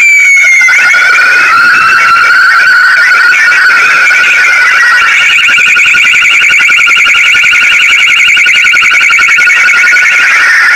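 Electronic emergency-vehicle sirens sounding together, loud. One steady high tone is held throughout. A second tone slides slowly down and back up, then about halfway switches to a fast warble.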